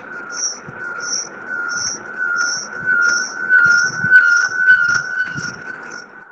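An alarm-like steady high tone with a short, higher pip repeating about every 0.7 s, growing louder.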